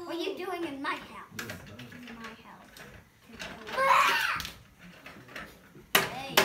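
Young children's voices: brief babble early on, then a short, louder child's exclamation a little before the two-thirds mark, with light clicks of small toys being handled.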